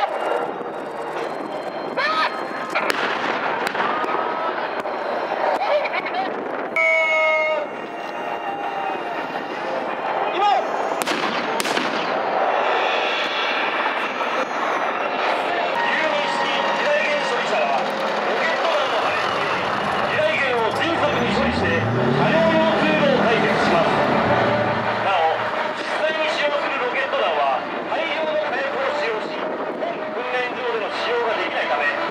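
Mock-battle gunfire and blasts, a string of sharp reports through the first dozen seconds, followed by a tracked armoured vehicle's engine revving up in a rising note around twenty seconds in.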